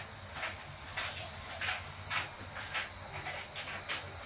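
Raindrops ticking irregularly, about two or three sharp taps a second, over a low steady hum.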